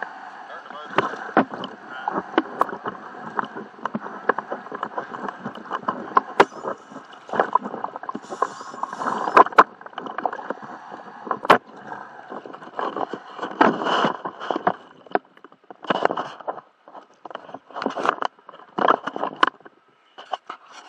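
Lake water sloshing and splashing around a camera at the surface against a fiberglass boat hull, heard muffled, with many sharp clicks and crackles throughout.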